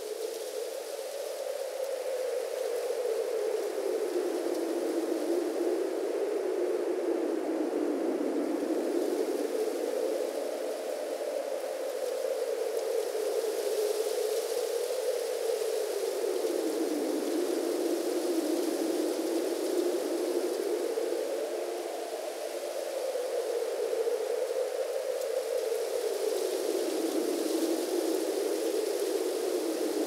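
A wind-like hiss whose pitch sweeps slowly up and down, rising and falling every few seconds, with no beat or melody.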